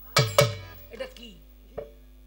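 Two sharp percussion strikes about a fifth of a second apart, each ringing briefly, then a lighter single hit near the end.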